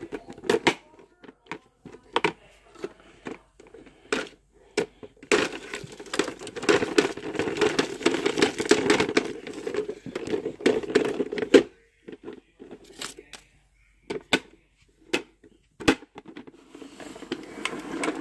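Plastic clicks and knocks from a toy garbage truck being handled. From about five seconds in come some six seconds of dense crinkling and rustling of crumpled paper as the trash is tipped out, then more scattered clicks.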